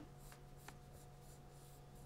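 Faint scratching of a pencil moving over paper as strokes are drawn, over a faint steady room hum.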